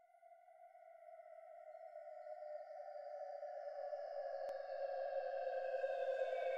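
Electronic music opening: a sustained synthesizer drone fades in from silence and grows steadily louder as higher held tones join it. A faint click comes about four and a half seconds in.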